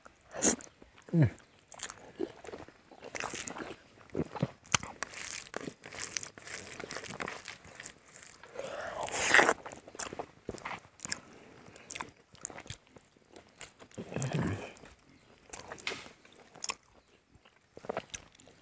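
A man chewing and biting mouthfuls of rice and pork curry close to a clip-on microphone: irregular clicks and smacks of chewing throughout, with a few short hummed "mm" sounds, the first about a second in.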